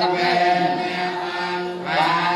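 Buddhist chanting: voices reciting on a steady, held pitch, with no break.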